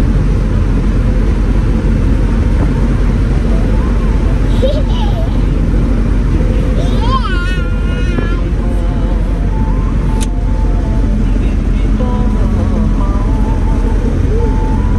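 Steady engine and road rumble inside a moving vehicle's cabin, with a young girl's high voice rising and falling as she laughs out loud about seven seconds in.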